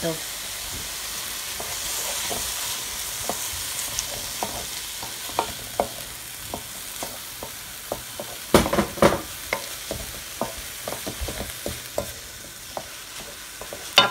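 Stir-fried cauliflower rice with beaten egg sizzling in a hot wok while a wooden spoon stirs and scrapes, knocking against the pan; the loudest knocks come in a short cluster a little past the middle.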